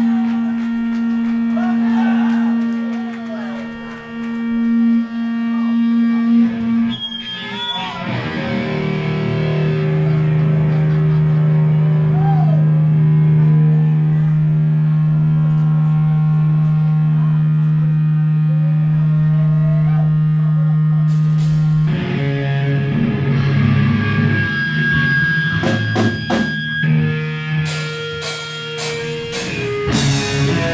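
Live heavy punk band: distorted electric guitars hold long, ringing low chords, moving to a new chord about a quarter of the way through. After about twenty seconds the drums come in, with cymbal crashes near the end.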